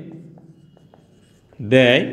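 Marker pen writing on a whiteboard, faint short strokes during a pause in speech.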